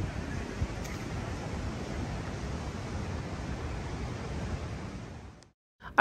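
Steady outdoor rushing of wind and sea surf, with wind on the microphone, fading out about five seconds in and dropping to silence just before the end.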